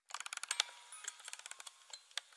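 Clockwork mechanism of a music box clicking: a rapid, irregular run of sharp ratchet-like ticks, as heard when a music box is wound or starts up, thinning out toward the end.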